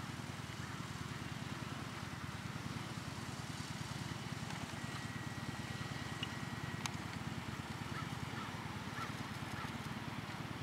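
Steady low rumble of outdoor background noise. A thin steady tone runs for about two seconds around the middle and ends in a single sharp click.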